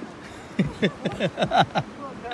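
A person laughing: a quick run of about ten short 'ha' bursts, each falling in pitch, starting about half a second in.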